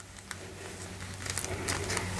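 Faint handling sounds as fingers press and smooth bias binding over a template on a padded ironing board: soft rustles and a few light ticks, over a low steady hum.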